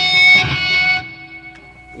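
Strings struck on a Dean ML electric guitar, played through an amplifier, ring out and fade over about a second, leaving a faint held tone.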